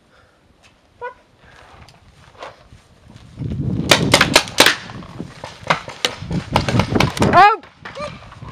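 Paintball markers firing an irregular string of sharp pops, several a second, from about three and a half seconds in, over a low rumble. A short voiced cry comes near the end.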